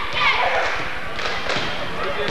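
Basketball being dribbled on a hardwood gym floor, its bounces giving dull thuds, with a sharper bounce about one and a half seconds in, under voices in the gym.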